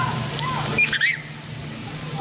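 Water pouring and splashing from a splash-pad water play structure onto a slide, with a short high voice about a second in.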